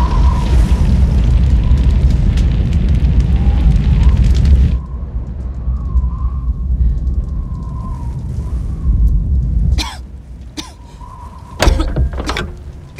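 Film sound effect: a loud, deep booming rumble with a hiss over it, which drops away sharply about five seconds in to a quieter low rumble. Sharp impacts follow near the end.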